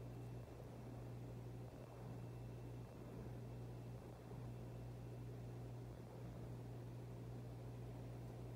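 Quiet room tone: a steady low hum with a faint hiss underneath.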